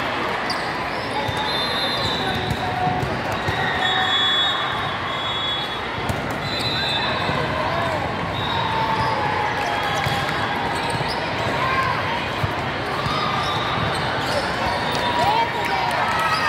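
Din of a busy volleyball hall: many voices talking at once, with sneaker squeaks and the thud of the ball being played during a rally, and short high-pitched tones sounding now and then across the hall.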